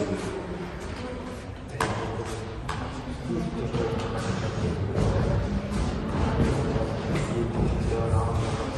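Music with voices over it, the low end growing fuller about halfway through, and two sharp knocks a little under a second apart about two seconds in.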